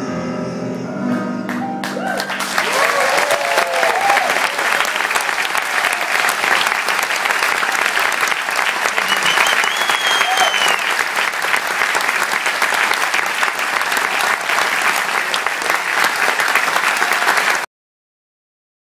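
The last held piano chord and voices of a song ring out for about two seconds. Then a concert audience applauds loudly, with cheering shouts near the start, until the sound cuts off just before the end.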